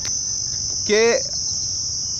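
Continuous insect drone, a steady high-pitched buzz that does not let up, with one short spoken word about a second in.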